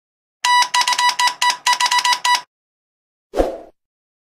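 Subscribe-button animation sound effect: a rapid run of about ten electronic ringing beeps, around five a second, lasting two seconds, then a single short low pop about three and a half seconds in.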